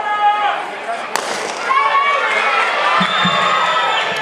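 A starting pistol fires once about a second in, a single sharp crack that starts the race. Spectators then shout and cheer.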